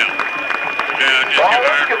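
Men's voices talking, clearest in the second half, with a faint steady high whine underneath.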